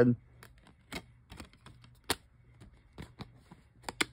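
Scattered light plastic clicks and taps from handling a multi-disc DVD case, its disc tray being moved and a disc pressed on the case's centre hub. One sharper click comes about two seconds in.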